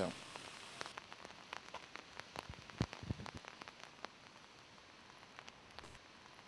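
Faint rain falling, with scattered drops ticking at irregular intervals.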